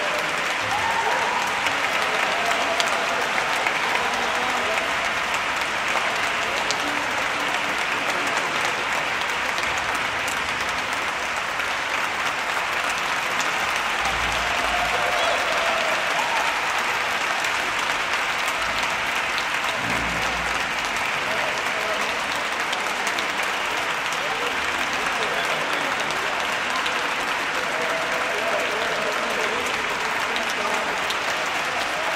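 Concert audience applauding steadily and densely after a choral and orchestral performance.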